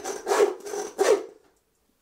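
Butcher's hand bone saw cutting across the rib bones of a roe deer carcass: three rasping strokes back and forth, then it stops about a second and a half in.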